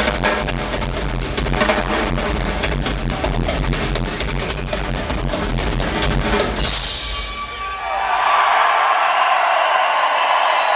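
Live drum solo on an acoustic rock drum kit: rapid, continuous bass drum under fast snare and tom hits, stopping about seven seconds in as a crash cymbal rings out and fades. The crowd then cheers.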